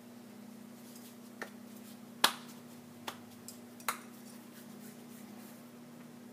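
A few sharp clicks and taps, the loudest about two seconds in, as hands wearing bangles work dough in a glass bowl of flour, over a steady low hum.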